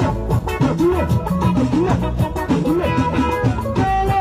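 Live Esan band music: electronic keyboard and electric guitar over drums, playing a busy, steady rhythm with repeated sliding, bending notes and no singing.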